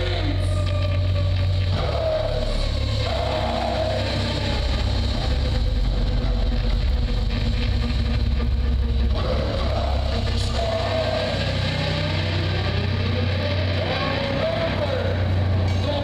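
Live sludge/doom metal band playing a slow, heavy passage: heavily distorted guitars and bass hold long, low droning chords that shift every few seconds, with a wavering melodic line above them.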